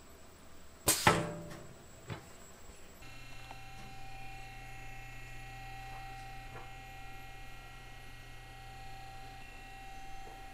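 A sharp metallic clunk about a second in, with a short ringing tail, as a bookbinding machine's bar comes down on a sheet of textured diary cover material, then a smaller click. From about three seconds on, a steady machine hum with a few faint clicks.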